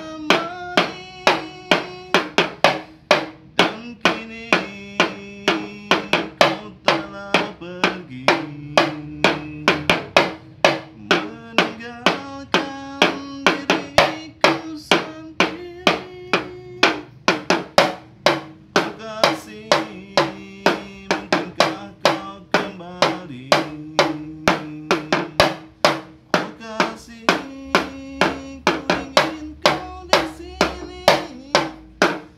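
A pair of small toy drums with clay bodies and cement-sack paper heads, struck with thin sticks in a quick, steady rhythm of about three strokes a second, over a sustained melody line of held notes that step up and down.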